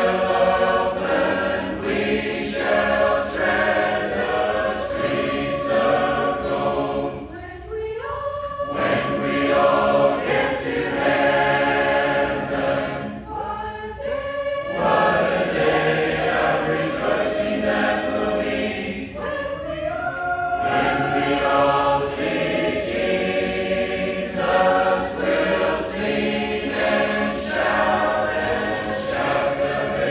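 Congregation singing a hymn a cappella, phrase after phrase with brief breaks between lines.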